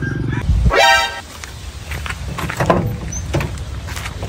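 A short pitched tone sweeps quickly upward about half a second in and stops near the one-second mark, followed by a few faint scuffs.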